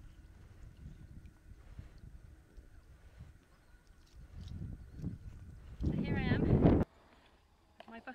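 Low wind rumble on the microphone with faint splashing as a plastic bucket is dipped into lake water to fill it. About six seconds in there is a loud quavering call lasting under a second.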